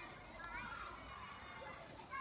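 Low, quiet sounds of a man chewing a mouthful of a seeded bread roll, over a faint outdoor background with weak, distant voices about half a second in.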